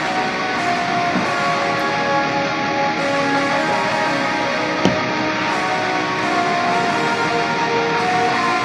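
Playback of a mixed metal song at its lo-fi chorus: a lead guitar line fuzzed and washed in reverb and ping-pong delay so that it sounds like a synth, with held notes, sitting in the full band mix. A single sharp hit lands about five seconds in.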